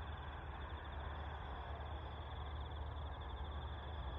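Crickets chirping in a steady, continuous high-pitched trill, over a low, steady background rumble.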